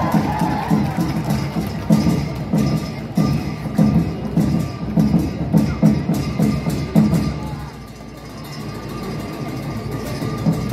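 Drum and cymbals of a Tibetan opera (Ache Lhamo) accompaniment playing a steady beat, about one and a half strokes a second, for a dancer. The beat quietens about eight seconds in.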